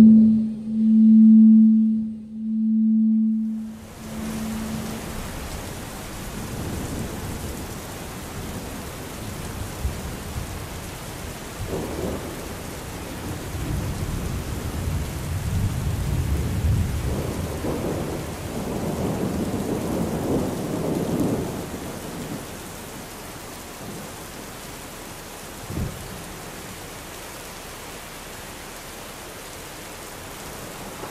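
Electronic performance sound over speakers: a low, steady tone pulsing in slow swells, typical of audiovisual entrainment. A few seconds in, it gives way to a sudden wash of rain-like noise with low rumbling swells that sounds like a thunderstorm.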